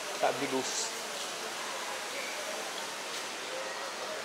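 Steady background hiss, with a brief snatch of a voice in the first second.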